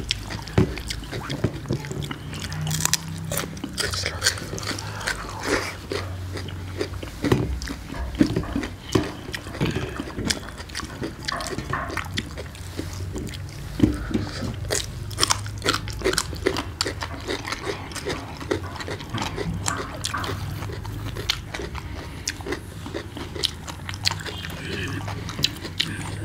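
Close-up eating noises of people eating rice by hand: irregular chewing and mouth clicks over a low steady hum.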